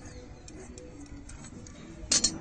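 Large tailor's shears cutting through cotton cloth: a run of faint, irregular snipping clicks as the blades close.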